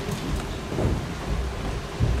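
Theatre audience applauding steadily, a dense patter of clapping with a low rumble underneath.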